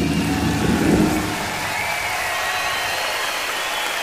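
A live rock band's final chord rings and dies away about a second in. It gives way to steady audience applause, heard on a hissy crowd recording.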